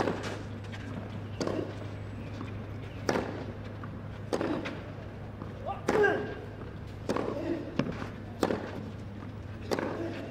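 Tennis rally on a clay court: racket strikes on the ball going back and forth about every second and a half, with a player's short grunt on a shot about six seconds in, over a steady low hum.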